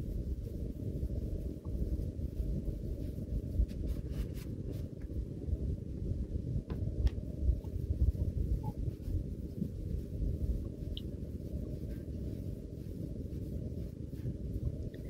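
Hands kneading a soft, sticky butter-enriched bread dough on a stainless steel worktop: irregular muffled thuds and squishes as the dough is pushed and folded, with a few faint clicks.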